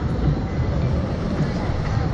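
Wind rushing over the ride's onboard camera microphone as the capsule hangs and sways high in the open air: a steady low rumble.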